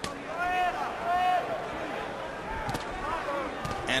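Boxing arena crowd noise with two loud, high-pitched shouts in the first second and a half and a weaker one about three seconds in, and a few sharp knocks near the end, likely punches landing during the exchange.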